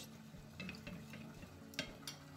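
Metal spoon stirring a thin flour-and-water mix in a ceramic bowl, working the flour in until it dissolves. Faint scraping with a few light ticks and a sharper clink of the spoon on the bowl near the end.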